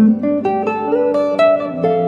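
Clean semi-hollow electric guitar playing a quick single-note improvised line over a C chord, about five notes a second stepping up and down, with lower notes ringing on underneath.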